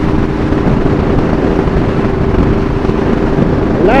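Motorcycle engine running steadily at cruising speed, with a low rumble of wind and road noise, picked up by a helmet camera's external tube microphone.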